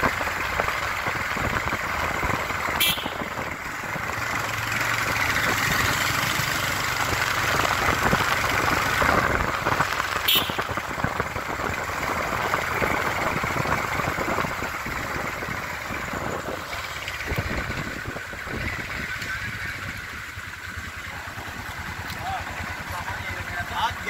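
Busy street ambience: many people's voices mixing into a steady chatter, with vehicle and motorbike engines running under it. Two sharp clicks cut through, about 3 seconds and 10 seconds in.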